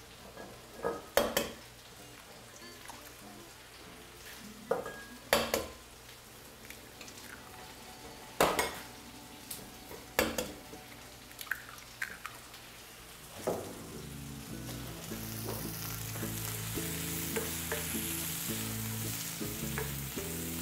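Scattered sharp knocks and clinks of kitchenware on a wooden worktop. From about fourteen seconds in, sliced onions are sizzling steadily in oil in a wok, with soft background music beneath.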